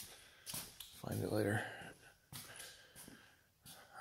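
A man's brief wordless vocal sound, low in pitch, about a second in, with a few light knocks and rustles of things being handled.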